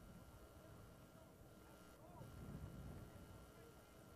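Near silence: faint outdoor field ambience with a low rumble, a little louder midway, and faint distant voices.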